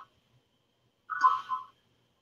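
Call audio cut to dead silence, broken about a second in by one short, thin, garbled burst, a fragment of a voice from the guest's bad connection.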